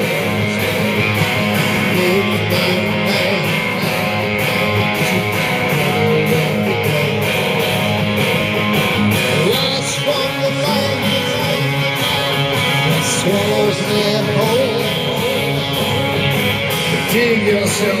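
Live rock band playing loudly and steadily: distorted electric guitar, bass guitar and drums, recorded from the audience.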